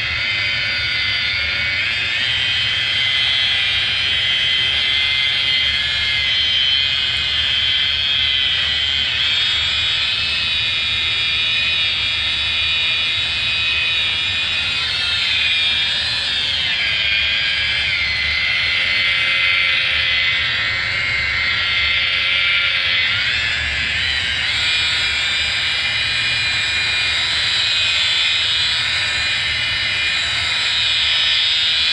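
Electric rotary polisher (DeWalt) spinning an 8-inch Turbobuff foam compound pad while buffing compound on a painted panel: a steady, loud, high motor whine. The whine dips in pitch and comes back twice, about halfway through and again about three quarters of the way in.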